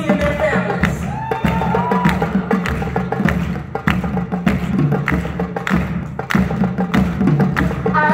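Live drum ensemble of hand drum, Senegalese talking drum and drum kit playing a busy, driving rhythm together, with dense strikes and a heavy low end.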